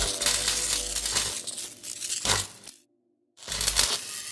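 Sound-effect sting for an animated logo: bursts of crackling noise that cut out completely for about half a second a little under three seconds in, then start again.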